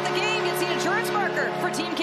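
Arena goal celebration: music with held chords playing over the public-address system, with many voices whooping and cheering, stopping just after the end.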